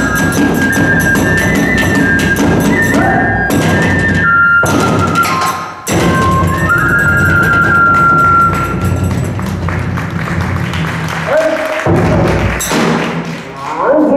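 Hiroshima-style kagura accompaniment: bamboo transverse flute playing a stepping melody over repeated strokes of a large barrel drum and clashing small hand cymbals, with brief breaks about four and a half and six seconds in. Near the end a voice calls out in long, gliding cries over the music.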